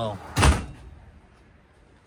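Freezer drawer of a 12-volt compact fridge pushed shut by hand, closing with one solid thump about half a second in that dies away quickly.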